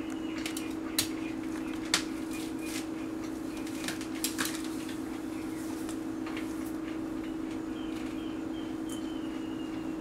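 A steady low hum with a few sharp clicks, about one and two seconds in and again around four seconds. A faint, thin high tone is heard near the end.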